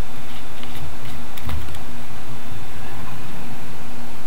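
Light clicks and soft knocks of a plastic oil bottle and its cap being handled and moved on a wooden table, scattered through the first couple of seconds, over a steady background hum.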